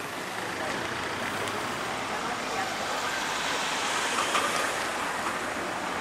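Steady outdoor road-traffic noise, a constant hiss that swells slightly about four seconds in.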